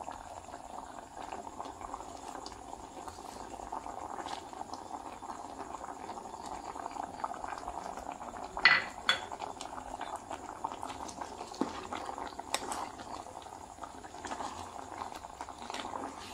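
Breadfruit curry simmering in a metal saucepan on a gas hob, bubbling steadily. A few short metallic clinks and knocks sound against the pan, the loudest about nine seconds in.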